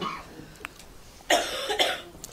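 A man coughing twice in quick succession, a little past halfway.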